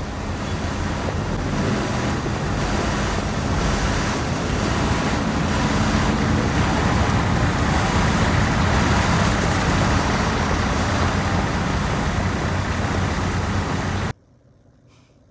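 A heavy truck's engine running with steady street traffic noise, a deep rumble under a broad roar, which cuts off abruptly at the end.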